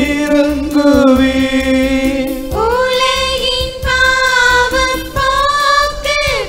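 Mixed church choir of men's and women's voices singing a Tamil hymn into microphones, on long held notes.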